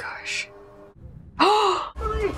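A quick breathy gasp, then faint steady music tones, then a short voiced sigh that rises and falls in pitch near the end.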